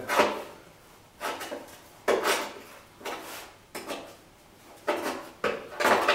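The folded edge of a car door skin being pulled and pried up with a hand tool: a series of short metal scraping and creaking sounds, about one a second.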